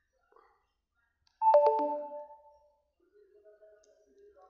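Phone low-battery alert: a short chime of four notes falling in pitch, struck quickly one after another, ringing out for about a second.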